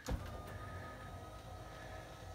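Electric motor of a pop-up TV lift lowering a flat-screen TV into its cabinet: a click as it starts, then a faint, steady whir with a thin whine.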